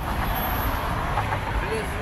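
Steady low rumble of road traffic or a vehicle, with faint voices near the end.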